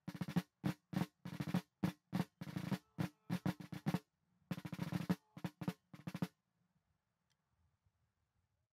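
Military snare field drums beating a marching cadence: a steady run of sharp strokes, several a second, with a brief pause near the middle, that stops abruptly about six seconds in.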